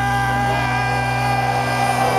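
Power metal band playing live through a festival PA, holding long sustained notes over a steady low drone.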